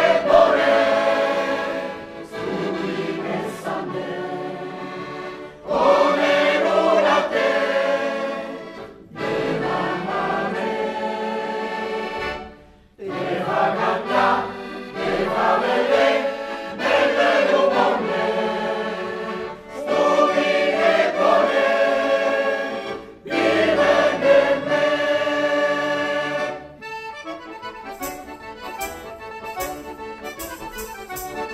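Mixed folk choir of men and women singing a folk song in phrases with short breaks between them, accompanied by an accordion. About three seconds before the end the voices stop and the accordion plays on alone.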